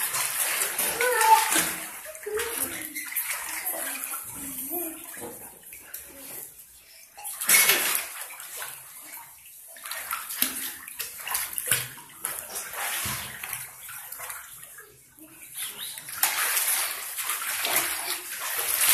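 Children splashing and paddling in a small above-ground pool, water sloshing and slapping irregularly, with a louder splash about seven seconds in and a run of heavier splashing near the end. Children's voices come and go over the water.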